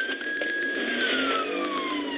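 Police car siren in a slow wail, holding a high pitch for about the first second and then sliding down, over the pursuing police car's engine and road noise.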